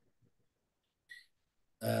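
Near silence during a pause in speech, broken by one brief faint mouth sound about a second in, then a man's voice starting up again with "uh" near the end.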